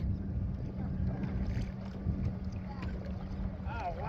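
Wind buffeting the microphone over small waves around a kayak, with a faint steady low hum underneath.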